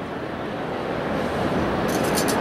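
Steady rushing background noise with no distinct events, growing slightly louder, with a few faint ticks near the end.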